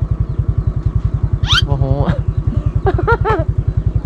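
Small motorbike engine running with a steady, even low throb. Short excited exclamations ("oh, wow") come in about a second and a half in.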